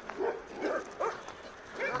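A few short, fairly faint dog barks in quick succession within the first second or so.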